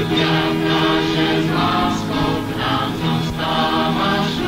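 A church schola (choir) singing a Christian song in sustained chords, heard on a 1980s recording.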